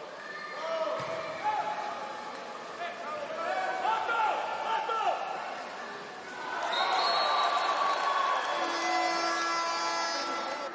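Broadcast commentator's voice over a water polo match, swelling louder about two thirds of the way in as a goal goes in, with arena noise and a few steady held tones underneath.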